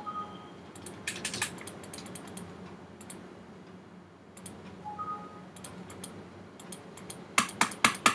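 Computer keyboard keys and mouse buttons clicked in short bursts, loudest near the end. A short two-note computer beep sounds at the start and again about five seconds in.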